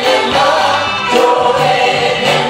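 Live gospel praise music in the sebene dance style: a lead singer and a choir of women singing together over a band of electric guitars, bass guitar and keyboard.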